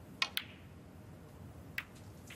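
Snooker cue striking the cue ball and balls clicking together: two sharp clicks in quick succession just after the start, then one more click near the end.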